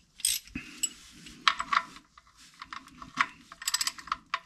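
Socket ratchet clicking in several short bursts as the 17 mm oil drain plug is run back into the oil pan.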